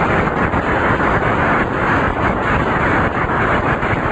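A large audience applauding loudly and steadily.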